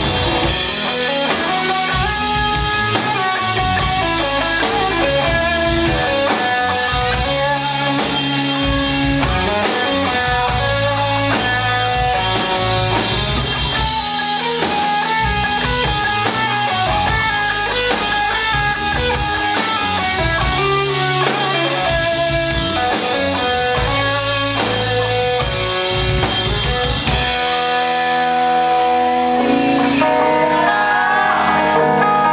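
Live rock band playing an instrumental passage with no vocals: electric guitar lines over electric bass and a drum kit. Near the end the bottom drops out, leaving the guitars ringing on.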